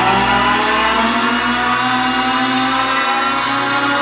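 Loud yosakoi dance music track with a sustained chord of many tones sliding slowly upward in pitch, a rising sweep in the music.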